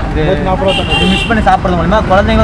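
Men talking over a steady low rumble of street traffic. A brief high-pitched tone sounds a little before halfway.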